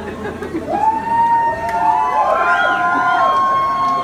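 Concert crowd cheering, with several high-pitched voices holding long screams from about a second in.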